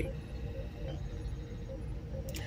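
Quiet room tone: a low steady background hum with faint steady tones and no distinct event.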